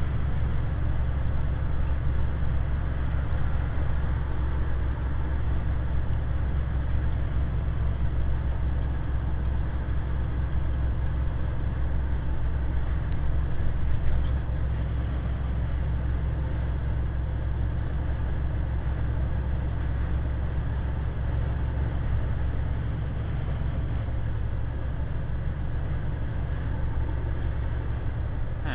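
Inside the cab of an International truck cruising at highway speed: a steady low engine drone under road and tyre noise, with one short louder moment about halfway through.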